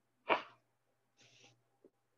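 A man's single short, sharp burst of breath through the nose or mouth a quarter second in, then a faint hiss of breathing about a second later.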